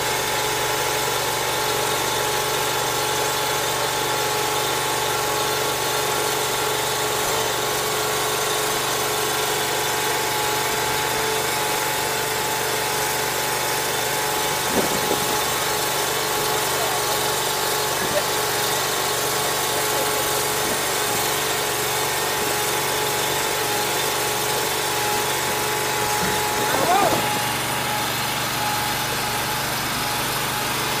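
The small engine on a 115 Platypus mobile home mover running at a steady, unchanging speed.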